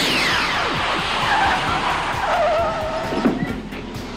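Car sound effect: a loud car noise falling in pitch, then a wavering tire screech, with music underneath.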